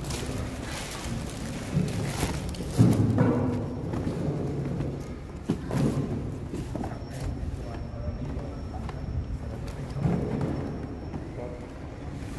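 Indistinct voices mixed with background music, with a few sharp knocks, the loudest about three seconds in.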